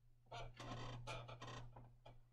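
Several faint handling noises as small plastic model-kit parts are worked by hand, over a low steady hum.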